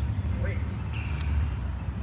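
Steady low rumble of city street traffic and vehicle engines, with a faint brief high tone about a second in.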